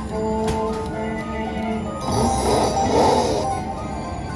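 Dragon Link Autumn Moon slot machine playing its electronic tune while the reels spin, then a dense cluster of chiming tones about two seconds in as the reels land.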